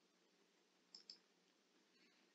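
A faint computer mouse click, two quick ticks close together about a second in, against near silence: a link being clicked open.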